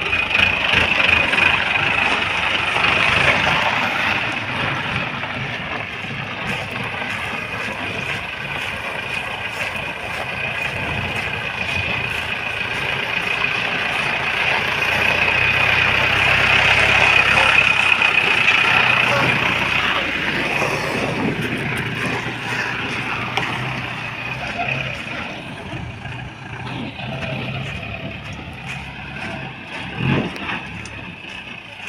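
Mahindra Bolero pickup's engine running as the vehicle pulls away and drives a round on a gravel track. It gets louder about halfway through as it passes close, then fades as it drives off.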